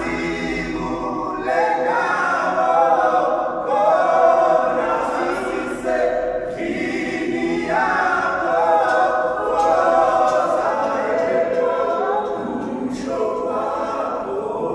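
A small group of young men singing a cappella in harmony, voices blending in held chords and phrases with no instruments.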